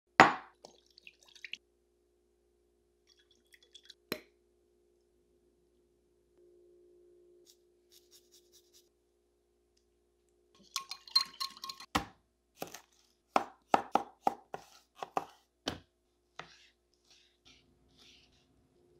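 A glass bowl set down on a wooden counter with a sharp knock. Later, a kitchen knife chops through raw beef onto a white plastic cutting board in a run of about ten knocks.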